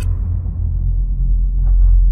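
A deep, steady low rumble: a horror film's sound-design drone, carrying tension under a quiet bedroom scene.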